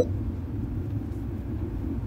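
Steady low rumble inside a car's cabin while it is being driven: engine and road noise.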